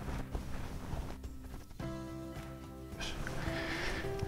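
Quiet background music with held notes that change about two seconds in and again near three seconds.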